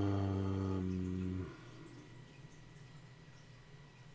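A man's drawn-out hesitation "uhhh", held at one steady pitch and ending about a second and a half in. Then quiet room tone with a faint steady electrical hum.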